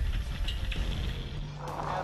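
Wind buffeting a camera microphone on an open sailboat at sea, a deep rumble, with a low steady hum coming in partway through.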